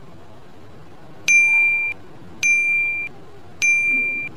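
Quiz countdown-timer sound effect: three identical short electronic dings, one about every second, each a bright high ring lasting about half a second.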